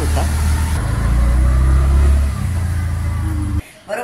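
Auto-rickshaw engine running on the move, heard from inside the open cab as a heavy low rumble. The rumble shifts in pitch about a second in and again after two seconds, then cuts off suddenly near the end.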